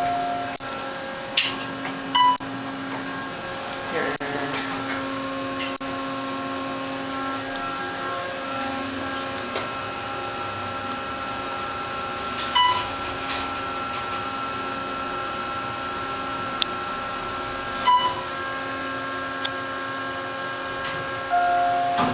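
Steady electrical hum inside an Otis hydraulic elevator car during a ride, broken by three short beeps and a longer tone near the end.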